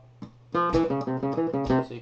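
Flamenco guitar playing a fast picado run of single plucked notes, starting about half a second in: a pickup note, then triplets.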